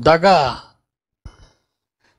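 A man's voice, speaking Telugu into a microphone, ends a word and trails off into a breathy sigh. A short, faint breath follows about a second and a quarter in.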